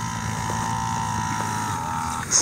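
A motor running steadily, with a high, even whine over a lower hum.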